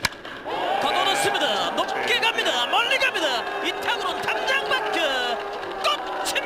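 A single sharp crack of a wooden bat hitting the ball right at the start, then loud, excited voices that carry on over the home run.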